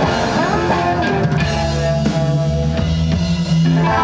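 Live rock band playing electric guitars over a drum kit, with a held chord ringing near the end.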